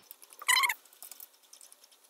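Wooden thumb wheel with an embedded steel nut being spun along a threaded bolt to tighten a Moxon vise: faint, rapid small ticks and rattles, with one short high squeak about half a second in.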